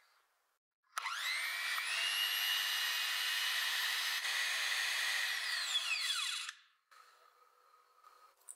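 Electric whisk beating whipping cream in a glass bowl: the motor spins up about a second in, runs steadily for about five seconds, then winds down and stops.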